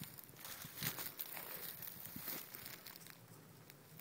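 Footsteps crunching through dry grass and brush, with irregular faint rustles and crackles that thin out toward the end.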